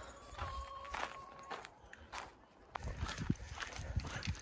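Faint footsteps of a person and a dog on a leash walking on a paved path, with light scattered clicks. About half a second in, a faint thin steady tone sounds for about a second.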